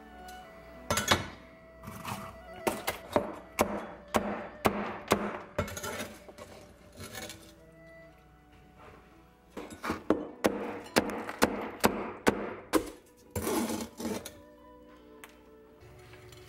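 A cleaver chopping through crispy deep-fried chicken on a wooden board: a run of sharp chops with crackling crust, a short pause, then a second run, over background music.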